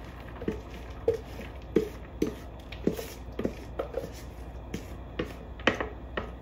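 A spatula knocking and scraping chopped green chilies out of a bowl into a saucepan of sauce: a string of short, irregular knocks, about two a second.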